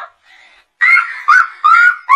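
Animated toddler character's high-pitched giggle, a run of short 'ha' syllables that bend up and down in pitch, about three a second, starting loud about a second in.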